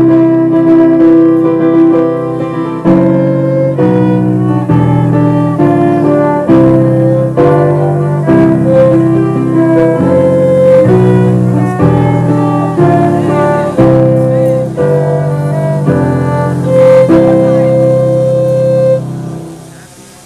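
Violin and electronic keyboard playing a wedding march in slow, held chords, the music fading out near the end.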